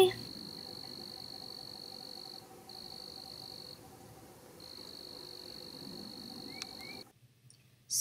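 An insect trilling steadily at a high pitch, breaking off twice, over a faint lower pulsing trill. Two brief chirps come near the end, and the sound stops abruptly about a second before the end.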